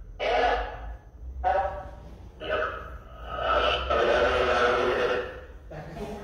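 A person's voice sounding in three stretches, the last and longest lasting about three seconds, without clear words; the voice is totally different from normal.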